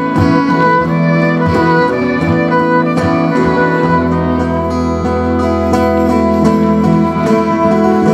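Live acoustic folk music: a fiddle playing over two strummed acoustic guitars, an instrumental passage with no singing.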